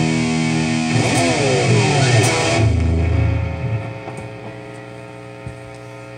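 Distorted electric guitar through an amplifier holds a loud chord, then about a second in its notes slide down in pitch together. The sound rumbles low and fades out by about four seconds, leaving a steady amplifier hum with one small click near the end.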